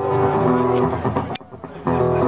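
Band music with held chords and guitar, possibly with a voice, dropping away briefly about one and a half seconds in before picking up again.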